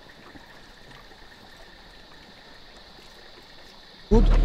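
The sound drops out suddenly to a faint, steady hiss with a couple of faint steady high tones; no distinct event is heard.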